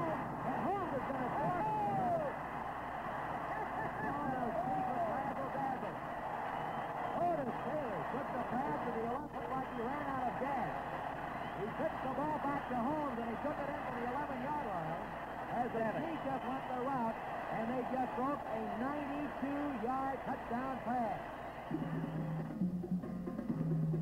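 Stadium crowd cheering and yelling after a long pass play, a dense steady roar of many voices heard through an old, narrow-band radio broadcast recording.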